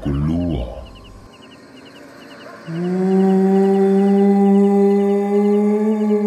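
Faint insects chirping in quick regular groups. About three seconds in, a loud, long, low held tone with overtones starts and holds steady, rising very slightly in pitch.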